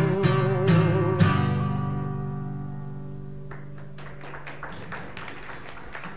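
Acoustic guitar closing a folk song: the last chord is strummed a few times in the first second and a bit, then rings and slowly fades. A few faint clicks follow in the last couple of seconds.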